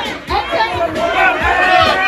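A group of people shouting and cheering together, many voices at once, over music with a steady low beat.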